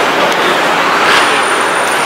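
Loud, steady rush of city street noise from passing vehicles, with a thin high whine starting about a second in.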